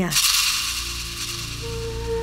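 Background film score: a rattle-like shaker swish at the start, settling into soft held notes, with a new note entering about one and a half seconds in.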